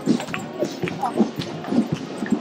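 Horse hooves clip-clopping on the asphalt road as a horse-drawn carriage passes, with people talking over it.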